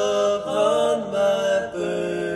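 A slow song's sung vocals holding long notes in harmony, stepping to new pitches about three times.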